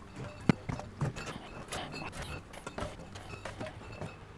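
Aluminium beer cans being set into a soft cooler one after another: a run of light knocks and clinks, the sharpest about half a second in.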